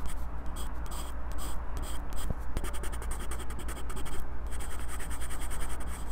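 Graphite pencil scratching on sketchbook paper, heard up close through a microphone clipped to the pencil itself. Separate strokes in the first couple of seconds give way to rapid short back-and-forth hatching strokes, with a brief pause a little past four seconds.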